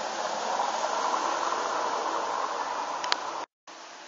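Steady rushing outdoor background noise, with one sharp click about three seconds in; the sound cuts out abruptly shortly before the end.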